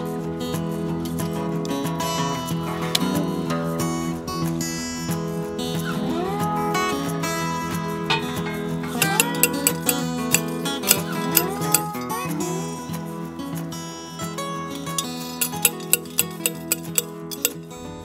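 Acoustic guitar background music with sliding notes. From about halfway in comes a run of sharp metallic clanks, two to three a second, from a T-post driver hammering a steel fence T-post into the ground.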